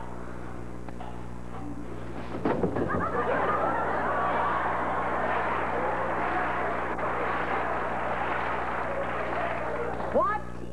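Studio audience laughing, starting suddenly about two and a half seconds in and going on to the end. A low electrical hum runs under it throughout.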